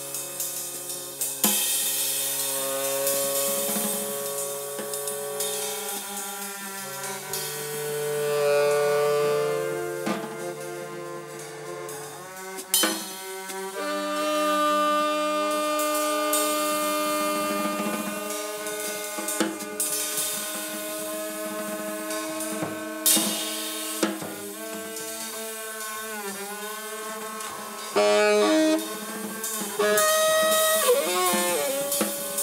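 Free jazz trio improvisation: a saxophone plays long held notes that bend and glide in pitch, over loose drum-kit playing with scattered cymbal crashes. A double bass is played with a bow, holding low sustained notes for the first twelve seconds or so.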